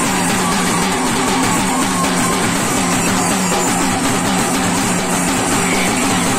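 Folk dance drumming: a large steel-shelled drum beaten with sticks, with a steel plate struck alongside, playing a dense, unbroken rhythm.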